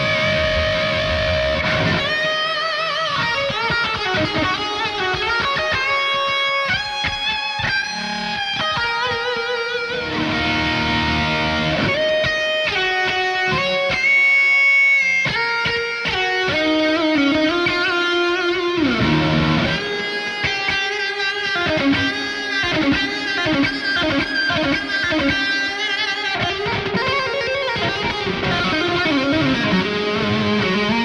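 Chapman ML1 Modern electric guitar with Seymour Duncan pickups played through an amp: a lead passage of single notes with bends. A long held high note comes about halfway through, a slide down follows a few seconds later, and the second half has quicker runs of notes.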